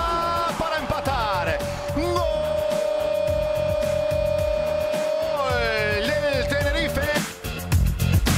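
A football commentator's long, drawn-out shout of "gol", held on one note for about six seconds, over background music with a steady beat.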